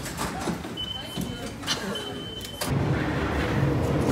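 Métro ticket gates clicking and giving two steady high beeps as people pass through. About two-thirds in, a sudden low rumble as a Paris Métro train runs along the platform.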